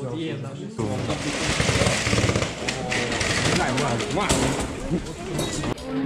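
Crowd of people talking over one another at close range, with a dense rapid clattering and rattling that starts suddenly about a second in.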